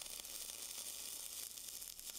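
Gas-shielded (dual shield) flux-cored welding arc running .045 E71T-1 wire on carbon steel, a faint, steady, fine crackling hiss.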